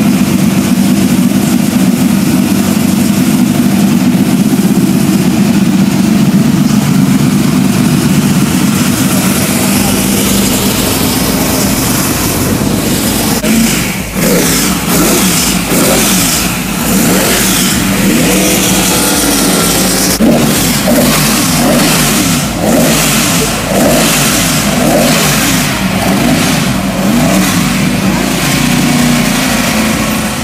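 Race-prepared classic Ford Mustang engine idling steadily, then revved in repeated short throttle blips from about 13 seconds in, rising and falling again and again.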